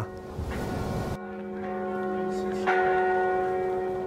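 Church bells ringing: a bell tone sets in about a second in and another is struck near the three-second mark, each holding with many overtones and fading slowly. A rushing noise comes before the first tone.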